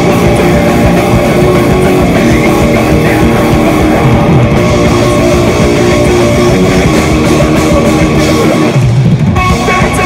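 Live metalcore band playing loud, with heavily distorted electric guitars and a drum kit, in a dense wall of sound that thins out briefly just before the end.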